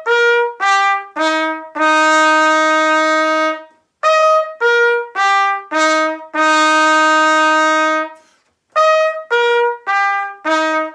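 Solo trumpet playing a repeated phrase: a few short notes stepping downward, then a long held low note of about two seconds. The phrase is heard twice, and starts a third time near the end.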